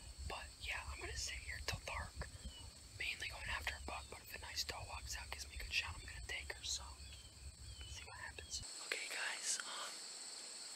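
A person whispering in short, breathy phrases, with a steady high-pitched insect trill underneath.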